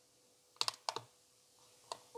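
Small plastic clicks from a Panasonic RQ-SX30 personal cassette player's controls and mechanism as play is tried with no cassette loaded: two quick double clicks about half a second to a second in, then a single click near the end.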